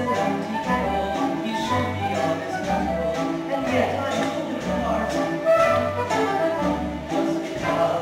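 Instrumental orchestral music with melody lines over a steady, evenly pulsing bass beat.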